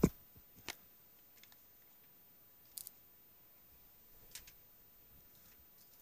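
Near silence with a few faint clicks of handling: one about a second in, a quick double click near the middle, and a weaker one later, as the boxed flashlight package is picked up.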